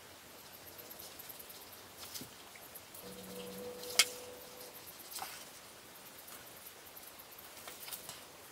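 Sharp scissors cutting through thin suede leather: faint scattered snips and rustling, with one sharper click about halfway through.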